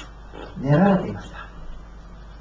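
A man's voice through a microphone: one short, drawn-out vocal sound about half a second in, rising and then falling in pitch, followed by a pause.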